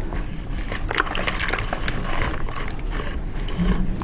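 A plastic mixing stick stirring casting plaster and water in a plastic bucket, with irregular scraping and small knocks against the bucket's sides as the lumps are worked out of the mix.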